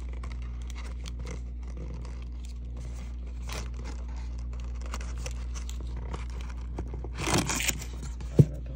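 Stiff paper gift bag being handled close up: light scraping, rustling and small clicks of paper under the fingers as chains are threaded on, with a louder rustle near the end, over a steady low hum.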